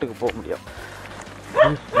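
A dog barking briefly near the start, with people's voices coming in near the end.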